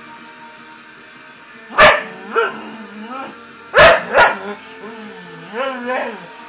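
English Bull Terrier barking: two loud barks about two seconds apart, each followed quickly by a smaller second bark, then a short wavering vocal sound near the end.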